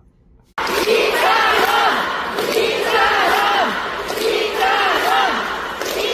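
A large concert audience chanting a short phrase in unison, over a steady crowd din. The chant repeats about every two seconds and begins about half a second in.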